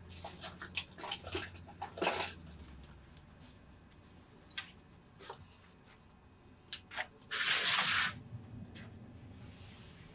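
A short hiss of fine mist from a continuous-spray bottle, lasting under a second, about seven seconds in. Before it, soft rustling and small clicks of fabric and tools being handled.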